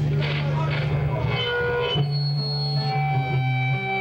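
Amplified electric guitar: muffled talk gives way about halfway to a sudden struck chord that rings out and holds through the amp, over a steady low hum.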